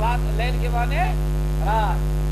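Loud, steady electrical mains hum, with a man's voice speaking over it.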